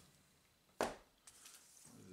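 A single sharp slap about a second in as a comic book is set down flat on a stack of comics.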